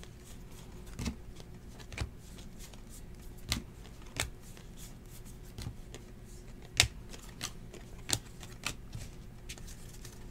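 Baseball trading cards being flipped one at a time through a hand-held stack. Each card gives a short, sharp snap, irregularly, about once a second, and a few louder snaps fall in the second half.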